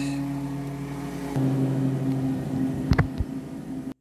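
A steady low machine hum that grows stronger about a second and a half in, with a couple of sharp clicks about three seconds in, then the sound cuts off suddenly.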